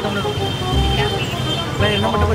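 Men's voices talking over steady background traffic noise.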